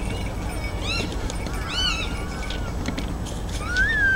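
A few short, high bird chirps and twitters over a steady murmur of an outdoor crowd, with a longer whistled call rising and then falling near the end.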